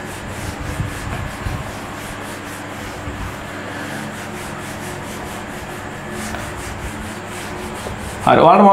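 Whiteboard eraser rubbing across a whiteboard in quick repeated strokes as the board is wiped clean.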